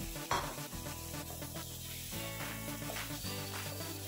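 Chickpeas being stirred into sizzling masala in a non-stick kadai, with a spatula scraping the pan a few times. Quiet background music plays over it.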